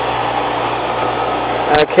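Steady machinery hum in a boat's engine room, with a constant low drone and no change in pitch.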